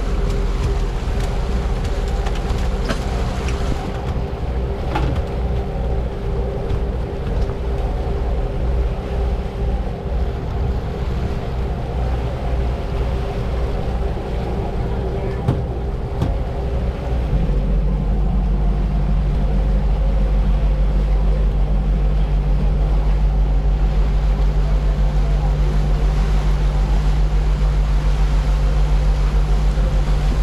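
A sportfishing boat's engines running under way with a steady low drone. About 17 seconds in they grow louder and settle into a deeper, even note as the boat picks up speed, leaving a larger wake.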